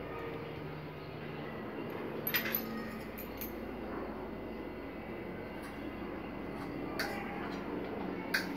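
A steady low hum runs under a few light clicks of a steel fork against a china plate as food is cut and picked up, a small cluster about two and a half seconds in and one more near the end.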